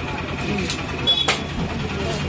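Indistinct voices over a steady low rumble, with one short sharp click about a second and a quarter in.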